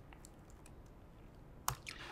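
Faint clicks of computer keyboard keys being typed, a few soft ones and a sharper one near the end, over quiet room tone.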